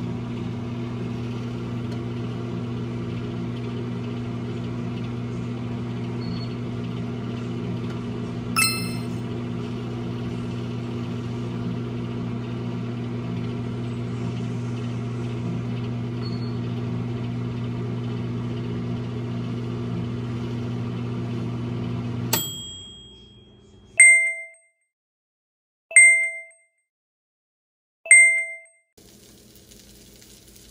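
Sunbeam microwave oven running with a steady low hum, with one short clink about a third of the way in. About three-quarters through, the hum stops with a click, and three beeps follow two seconds apart, signalling the end of the cooking cycle.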